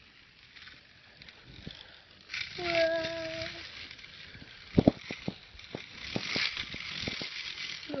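Handling noise: rubbing, and then a cluster of sharp clicks and knocks a little past halfway. Before the clicks comes a short held tone that sounds like a voice.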